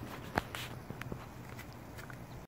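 A few soft footsteps and scuffs, short separate knocks over a low, steady background.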